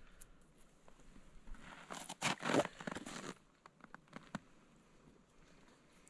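Scratchy rustling and scraping of thin snare wire being wound tightly around a tree. It is loudest in a cluster of about a second and a half a little before the middle, then a few light clicks.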